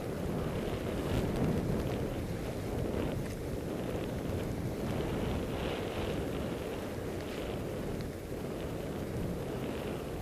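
Wind rushing over a helmet camera's microphone as the skier descends through deep powder snow: a steady low rush with no break.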